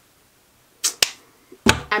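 Quiet room tone, broken about a second in by a brief hiss and a single sharp click, then a woman starts speaking near the end.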